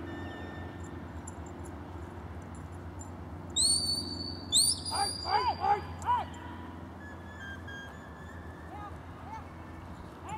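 Two high shepherd's whistle signals a second apart, each sliding up and then held, the second one longer: a whistled command to the working sheepdog to set off and drive the sheep.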